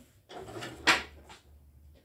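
A short clatter of something being handled: a low rustle, then one sharp knock just under a second in and a fainter click shortly after.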